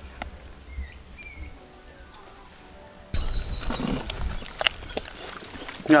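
Birds calling: a couple of faint chirps, then about halfway through a louder bird call of quick, high, falling notes repeated about five times a second.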